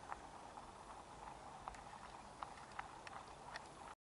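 Faint clip-clop of horses' hooves on a tarmac lane, a few scattered hoof strikes over a light hiss.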